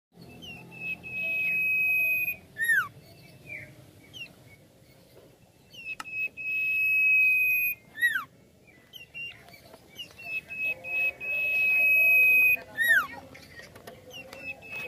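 Common iora singing three phrases, each a long, steady, high whistle of about one and a half to two seconds ending in a short downward-sliding note.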